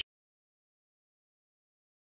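Silence: the soundtrack is empty.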